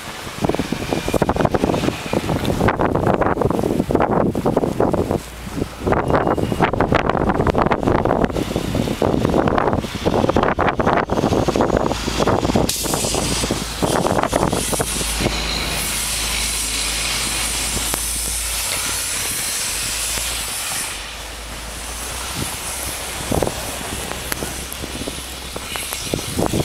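Strong blizzard wind buffeting the microphone in irregular gusts, a heavy rumbling rush for the first half that turns into a steadier high hiss about halfway through.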